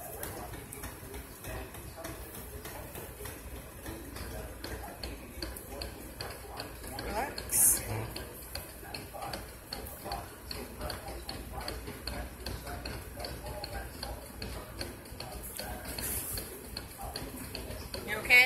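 Faint voices talking in the background, with a light, regular ticking running through the second half.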